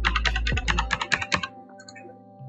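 Quick keystrokes on a computer keyboard as a password is typed, stopping about a second and a half in.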